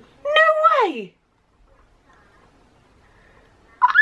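A woman's wordless, high-pitched vocal exclamation: one drawn-out 'ooh' that slides down in pitch over about a second. A short high vocal sound starts again near the end.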